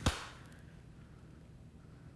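A single sharp hand clap at the start, followed by a brief ring of reverberation.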